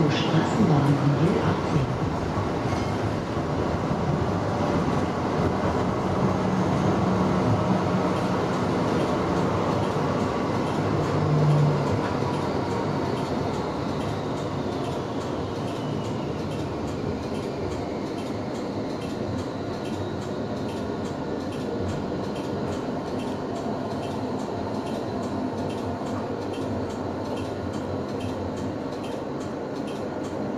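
Cabin sound of a VGF Pt-class tram underway: steady rolling and running noise of wheels on rail with motor hum. There is a short louder swell near the middle, and then a whine falls slowly in pitch over the following several seconds.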